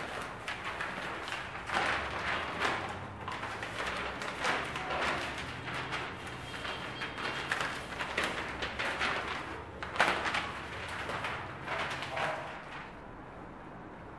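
Stacks of paper ballots rustling and shuffling as they are sorted by hand on a cloth-covered table, in a run of irregular papery swishes, with one sharp knock about ten seconds in.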